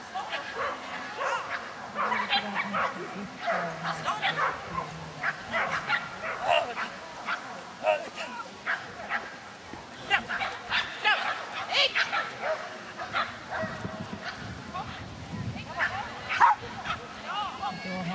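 Dog barking over and over in short, sharp barks, several a second at times, while running an agility course.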